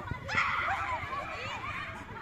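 Several high voices shouting and shrieking at once during a football game, breaking out about a third of a second in and tailing off over the next second or so.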